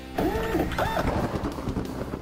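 Segment-transition sound effect: a rhythmic, machine-like electronic warble that rises and falls, repeating about two to three times a second, starting a moment in.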